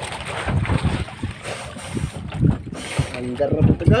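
Wind buffeting the microphone and sea water moving around a small outrigger boat drifting with its engine off, with voices near the end.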